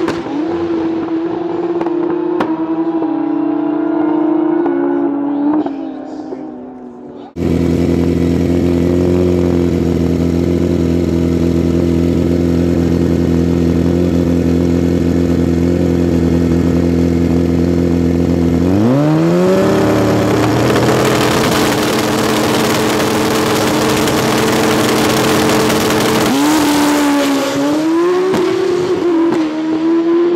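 Pro Street drag motorcycles racing down the strip: the engine note steps through upshifts and fades away. After a cut, a bike's engine is held at a steady high rev at the starting line. A little past the middle it rises sharply at the launch and runs hard down the track, dipping and climbing again through gear changes near the end.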